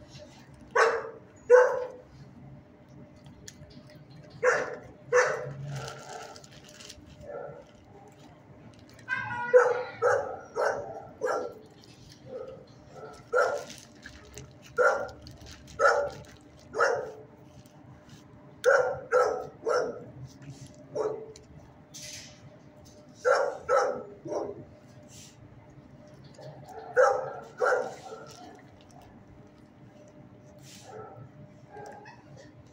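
A dog barking: loud single barks in pairs and short runs, repeated every few seconds.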